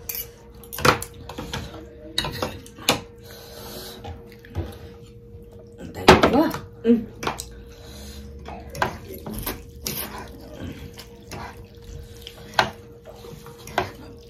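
People eating noodle soup: noodles being slurped, with forks and spoons clinking and scraping against the bowls in short sharp strikes, over a faint steady hum.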